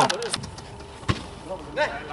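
Faint background of a small-sided football match after a goal: distant players' voices, with one sharp thump about a second in and a brief shout near the end.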